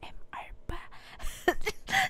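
A woman whispering close into a microphone in soft, breathy fragments, with short voiced bits near the end as she starts to laugh.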